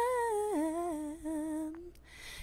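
A lone female voice singing unaccompanied, holding a note that steps down in pitch about half a second in, then trailing off just before the end.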